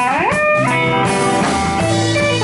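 Rock band playing live: electric guitars over bass guitar and drum kit, with a guitar note gliding up in pitch near the start.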